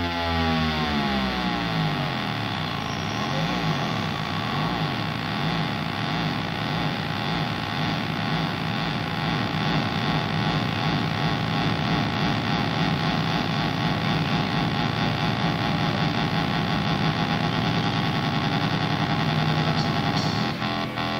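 Synthesizer drone opening a new wave song: a falling pitch sweep over the first couple of seconds, then a dense, steady buzzing chord with a fast wobble in the bass.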